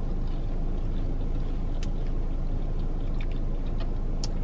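Steady low rumble of a parked car running, heard inside the cabin, with a few faint clicks of mouth sounds while chewing toast about two seconds in and again near the end.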